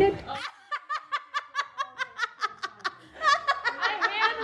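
Women laughing: a quick run of short, even laugh pulses, about six a second, after which voices pick up again near the end.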